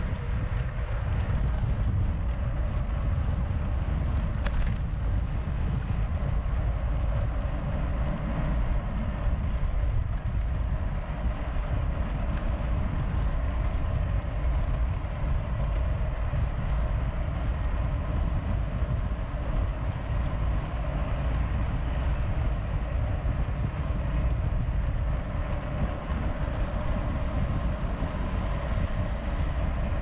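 Wind buffeting the microphone of a mountain bike rider's action camera at about 35 km/h, mixed with steady tyre rumble on the road surface; a constant, low-heavy rushing noise.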